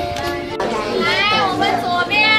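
Music with steady held notes, then from about half a second in a very high-pitched voice calling out over it, its pitch sliding up and down.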